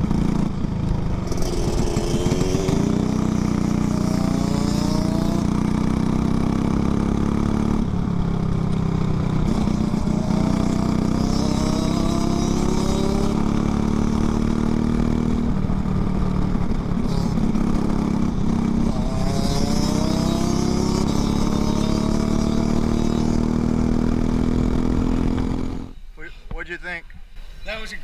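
Briggs & Stratton LO206 single-cylinder four-stroke kart engine running hard on track, heard from the driver's seat. Its pitch rises again and again as the kart accelerates out of the corners and drops back when he lifts off. About two seconds before the end the engine sound cuts off suddenly.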